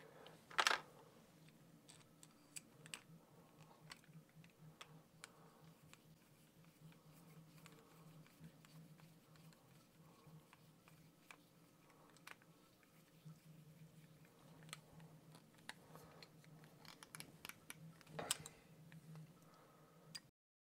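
Faint scattered clicks and taps of small kit parts and a hex driver being handled during RC crawler assembly, with a sharper click about a second in and another near the end, over a faint low hum.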